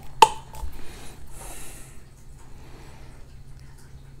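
A plastic flip-top cap on a creamer bottle clicks open once, followed by a short soft hiss and faint handling sounds as the creamer is poured into a mug.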